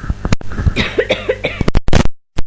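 A man coughing and clearing his throat, followed near the end by a run of loud, sharp crackles.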